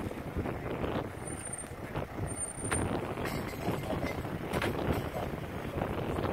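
Steady outdoor noise of a vehicle running nearby, with two brief faint high squeaks about one and two and a half seconds in.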